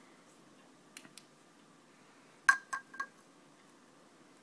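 A tall drinking glass clinking: four quick, sharp taps with a brief ring, starting about two and a half seconds in, the first the loudest. Two faint ticks come a second or so earlier over quiet room tone.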